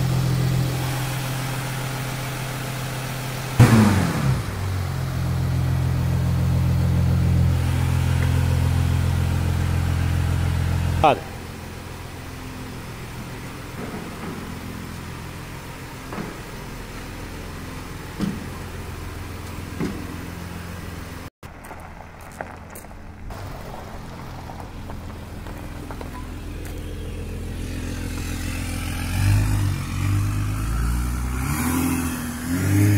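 Volkswagen Amarok's 3.0 V6 turbodiesel idling through a new downpipe and straight-through 4-inch exhaust, a steady deep drone. A sharp loud sound comes about four seconds in and another about eleven seconds in, and the engine note rises near the end as the truck pulls away.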